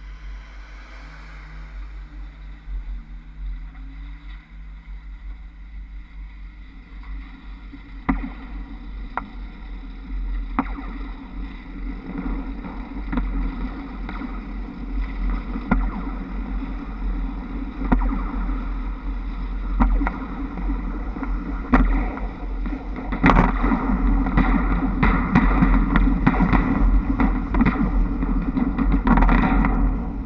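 Rushing wind and running noise on the roof of a Škoda 21Tr trolleybus as it pulls away and gathers speed, starting quiet and growing louder after several seconds. Sharp clicks and clacks from the trolley-pole gear running on the overhead wires come every second or two, and more often near the end.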